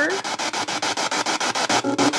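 Spirit-box radio scanner sweeping through stations, played through a portable speaker: static and broken radio fragments chopped about ten times a second, with a brief voice-like snippet near the end.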